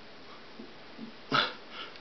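Quiet room tone, broken about one and a half seconds in by a short breathy sound from a person's voice.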